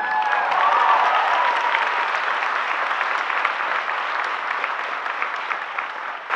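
A large audience clapping, with a few cheers and whoops in the first second or so. The clapping stays steady and eases slightly near the end.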